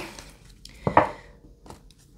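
Tarot cards being shuffled by hand: one sharp slap of cards about a second in, then a few light clicks near the end.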